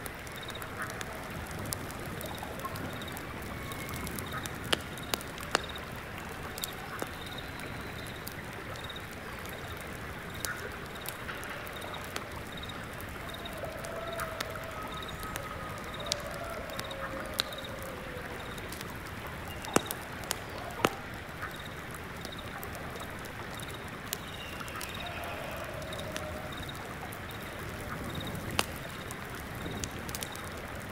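Layered nature ambience: a stream flowing steadily, with scattered crackling ticks from burning censer embers and a single insect chirping in a steady, repeated pulse. A few low bird calls come in, around the middle and again near the end.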